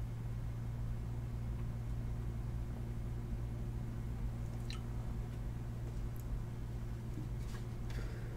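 Steady low hum in a small room, with a faint click about halfway through and a couple of faint ticks near the end.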